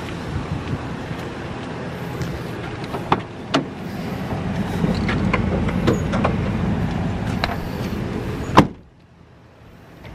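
Van's driver door being handled over a steady low rumble: scattered clicks and knocks, then one loud bang of the door shutting near the end, after which it goes much quieter.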